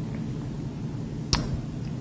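Room tone with a steady low hum, broken by a single sharp click a little over a second in.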